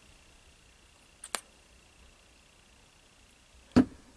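A craft glue bottle handled and set down on a tabletop: two small clicks about a second in, then a louder knock near the end, over quiet room tone.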